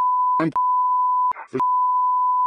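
Steady 1 kHz censor bleep tone laid over recorded speech. It is broken twice by short fragments of a man's voice, about half a second in and again about a second and a half in.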